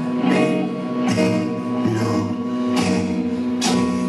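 Rock band playing live: electric guitar over a drum kit, with several cymbal crashes.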